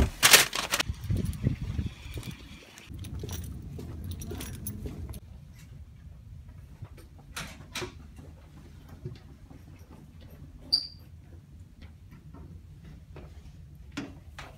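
Paper bag crinkling and handling noise in the first second, then a low rumble and scattered light knocks and clicks. There is one brief high chirp a little before the end.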